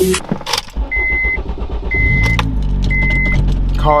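Honda K24-swapped Acura RSX started up: a few clicks, then the engine catches and idles with a steady low rumble while the car's warning chime beeps three times, about once a second.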